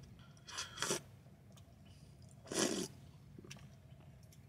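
Quiet mouth and breath sounds from a person: two short, noisy puffs, one about half a second in and a stronger one near three seconds in, over a faint low hum.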